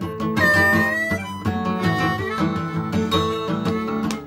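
Acoustic guitar strumming a blues rhythm, with a harmonica playing held notes that bend slightly upward in the instrumental gap between sung lines.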